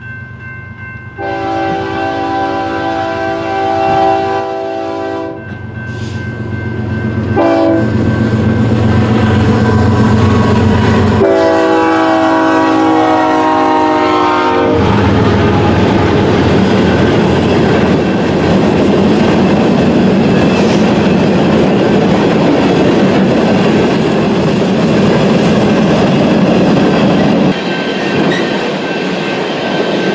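BNSF diesel locomotive horn blowing a long blast about a second in, a short one, then another long one: the grade-crossing signal as the train nears a crossing. From about halfway on, the coal train rumbles steadily past, the hopper cars clattering over the rail joints.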